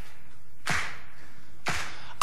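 Music from a live folk-rock song: two sharp percussive strikes about a second apart, each with a short ring after it, keeping the song's slow beat while the voices pause.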